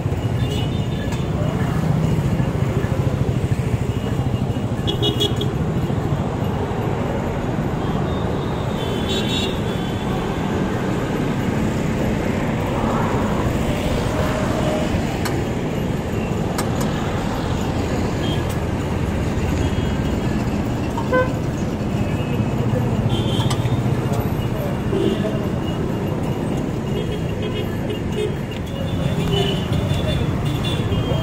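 Busy city road traffic running steadily, with short car horn toots now and then and voices in the background.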